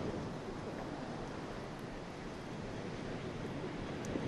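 Steady wind blowing over an outdoor microphone, an even rushing noise with no distinct events.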